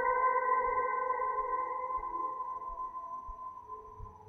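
Ambient electric guitar music: a single sustained note, washed in reverb and delay, slowly fading away.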